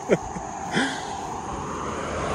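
A truck towing a trailer approaching along the road, its tyre and engine noise building steadily louder. A short laugh comes right at the start.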